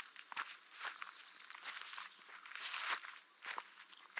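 Footsteps of a walker on a narrow dirt trail overgrown with low plants: irregular crunching steps, several per second.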